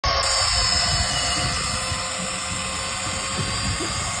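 Shimano electric fishing reel's motor running with a steady whine over a constant rushing noise.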